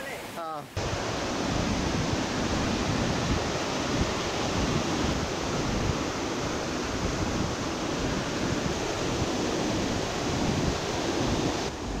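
Steady rush of water from a rocky forest stream, an even constant noise that sets in abruptly just under a second in.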